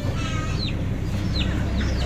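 Caged chickens calling: a few short, high, falling chirps over a low, steady rumble.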